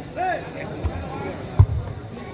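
Footvolley ball being struck by players' feet or bodies in a rally: two dull thumps well under a second apart, the second louder, with a short shout just before them.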